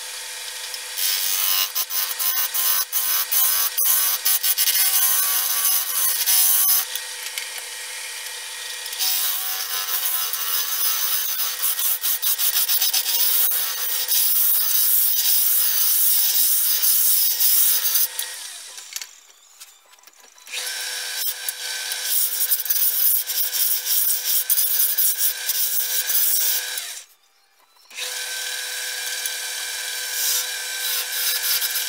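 Wood lathe turning a wooden cylinder while a hand-held turning tool cuts into it, a loud continuous scraping hiss of shavings coming off the spinning blank over the lathe's steady hum. The cutting breaks off briefly twice, near the middle and again shortly before the end.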